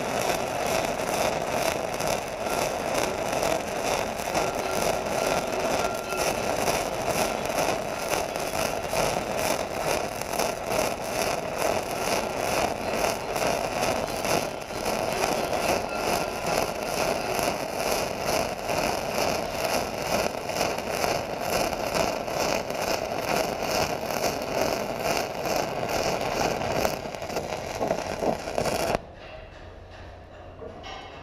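Shielded metal arc (stick) welding with an E6010 electrode on steel plate: a steady, loud crackling hiss of the arc. It stops abruptly near the end as the arc is broken.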